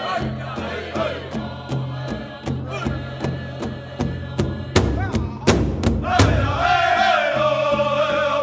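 Pow-wow drum group: male voices singing together in high, held lines over a large drum struck in a steady beat. A few much louder drum strokes land about five to six seconds in, and then the singers come back in on a long held line.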